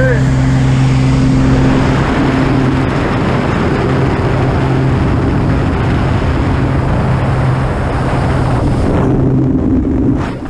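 Small single-engine plane's engine and propeller droning steadily, heard from inside the cabin, with a loud rush of wind through the open jump door that swells about 2 seconds in.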